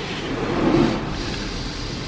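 Water spray and machinery of an automatic drive-through car wash running over the car, heard from inside the closed cabin as a steady rushing noise that swells briefly about half a second in.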